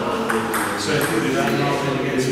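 People talking in a hall, with a few short, sharp ticks of a table tennis ball.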